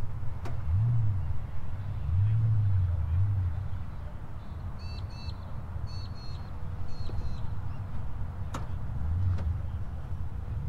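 Outdoor ambience: a steady low rumble, heavier in the first few seconds, with a bird giving a string of short chirps about halfway through and a few faint clicks.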